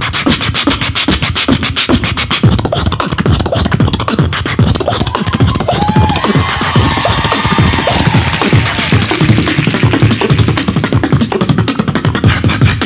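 Human beatboxing through a handheld microphone: a fast, steady run of vocal kick, snare and hi-hat sounds, with a pitched vocal melody sliding up and down over the beat in the middle.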